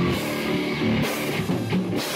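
Live heavy metal band playing loudly: electric guitar, keyboard and drum kit going together in a steady wall of sound.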